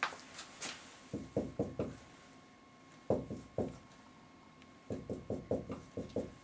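Marker writing on a whiteboard: short tapping strokes in small clusters, about a second in, twice around three seconds in, and again near the end.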